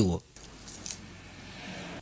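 A man's voice breaks off just after the start, leaving quiet room sound with a few faint, light clinks under a second in.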